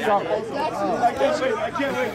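Indistinct chatter: several people talking over one another at once, no single voice standing out.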